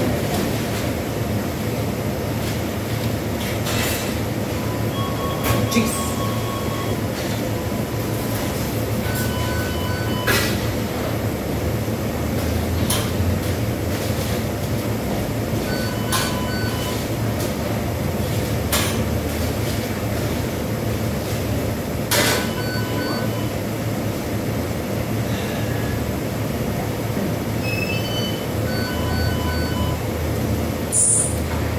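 Steady low indoor rumble with several short runs of electronic beeps and a few sharp clicks and knocks scattered through it.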